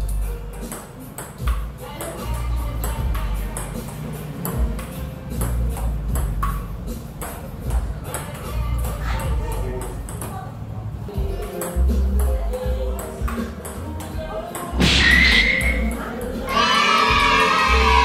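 A table tennis rally: the ball clicks off the paddles and the table in quick, uneven succession, over background music with a heavy bass beat. Voices rise near the end.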